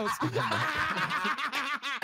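A man laughing hard, an unbroken high-pitched laugh with a wavering pitch.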